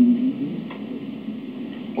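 A man's drawn-out, level "unnn" fades out in the first moment, then a pause with only the steady hiss of an old lecture recording and one faint click less than a second in.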